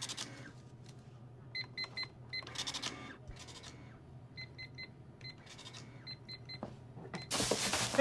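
Cash register keypad beeping in three quick runs of short, identical high beeps as items are rung up at a checkout. Brief rustling in between, and a louder plastic-bag rustle near the end as the bag is grabbed off the counter.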